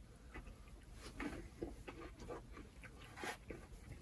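Faint, irregular crunching and mouth noises of someone chewing a bite of Butterfinger bar, a brittle, crunchy peanut-butter candy bar.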